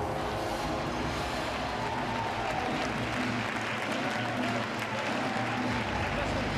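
Audience applauding over runway show music.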